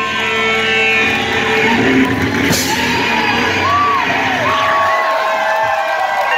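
Live rock band's electric guitar and drums ringing out on the closing chords of a song, with the crowd whooping and shouting over it. The low end drops away about five seconds in as the band stops.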